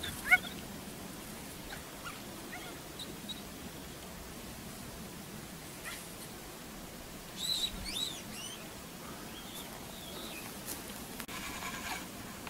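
A dog whining in short, high-pitched yelps: one sharp yelp about a third of a second in, a few faint whines a couple of seconds later, and a cluster of several whines at about seven and a half seconds.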